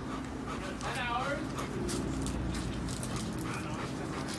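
Rottweiler whining, with a short high whine about a second in.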